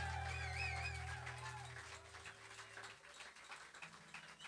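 Sustained low notes from a live rock band's instruments ringing out and dying away in steps over about three seconds. A wavering high whistle sounds about half a second in. The end is a quiet club room with faint clicks.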